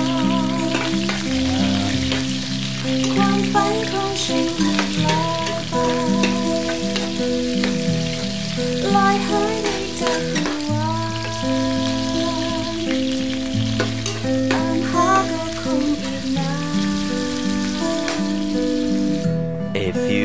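Sliced onions sizzling in hot oil in a nonstick frying pan, with a metal spoon stirring them, heard under background music of held, stepping notes. The sizzle cuts off about a second before the end while the music plays on.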